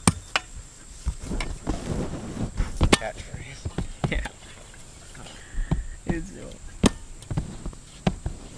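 A spade digging into dirt: several sharp strikes of the blade into the ground, about five in all, with softer scraping and scuffing between them.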